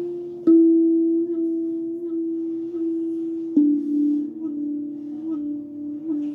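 A 33 cm steel tongue drum played with a rubber-tipped mallet, its notes ringing on and overlapping. There are two firm strikes, about half a second in and about three and a half seconds in, the second a lower note, with lighter notes between them.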